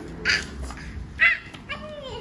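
A child's short, high-pitched yips, imitating a puppy's 'ruff'. There are two sharp ones, about a third of a second and a second and a quarter in, and a brief voiced sound near the end.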